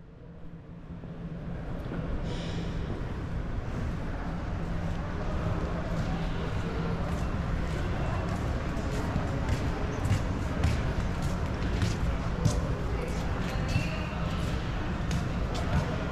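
Indoor public-hall ambience: indistinct voices of other visitors over a steady low hum, with scattered short clicks and taps through the second half. The sound builds up from a dip at the start.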